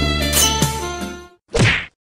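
Background music stops abruptly about a second and a half in, followed near the end by one short, loud comedic whack sound effect, like a slap on the head.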